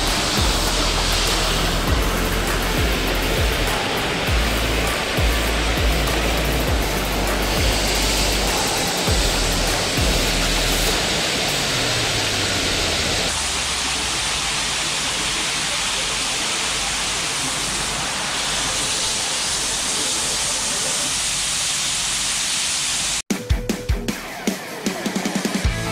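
High-pressure car-wash water spray hissing steadily against a ute's body and tyres, under background music. The spray cuts off shortly before the end.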